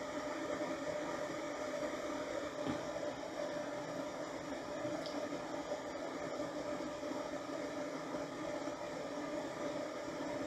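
Steady background whir with a constant hum and hiss, unchanging throughout, with no distinct clicks or events.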